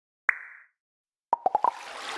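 Cartoon sound effects for an animated logo intro: a single sharp pop with a brief ringing tone, then about a second later four quick pitched pops in a row that run into a rushing, splash-like swish.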